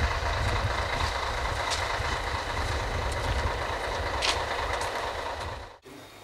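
Steady low rumble of a large vehicle engine running, with a few faint clicks over it. It cuts off abruptly near the end.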